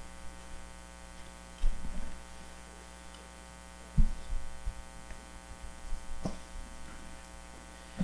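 Steady electrical mains hum, with a few low thumps and knocks as someone settles in at a pulpit microphone; the loudest knock comes about four seconds in.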